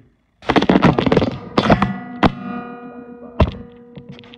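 Loud close-up thuds and knocks from the recording phone being grabbed and handled, starting about half a second in, with a pitched ringing that lingers and two more sharp knocks later.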